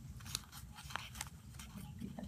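Folded origami paper units crinkling and ticking faintly as fingers tuck a paper piece into a modular Sonobe cube, a scatter of small sharp crackles.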